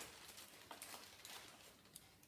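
Near silence, with a few faint, short rustles of a thin plastic bag being lifted and handled.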